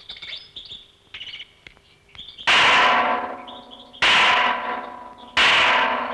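A large temple bell struck three times, about a second and a half apart, each strike ringing out and fading. Birds chirp faintly in the first two seconds before the first strike.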